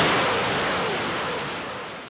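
A salvo of rockets launching from truck-mounted multiple rocket launchers: a dense, continuous rushing noise that starts loud and slowly fades.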